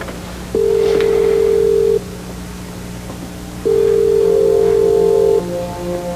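Telephone ringback tone heard through the receiver: two long, steady rings with a pause between, the sign that the line is ringing unanswered at the other end. Background music comes in softly near the end.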